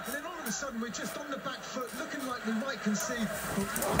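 A man's voice talking steadily, much quieter than the loud voice before and after: football match commentary playing in the background.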